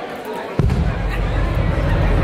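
A song's recorded backing track starts suddenly about half a second in over PA speakers, with a heavy, pulsing bass beat.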